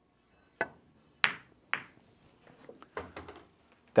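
Pool shot on a 4-9 combination: the cue tip strikes the cue ball, then two sharp ball-on-ball clicks follow about half a second apart as the cue ball hits the four and the four drives the nine. Lighter knocks and rattles come in the second half as the nine drops into the pocket.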